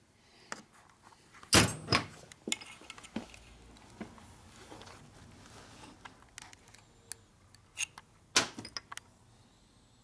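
Metal parts clinking and knocking against a Harley-Davidson four-speed transmission case as a shaft is worked down into its bore, with sharp knocks about one and a half seconds in and again near the end and light ticks between.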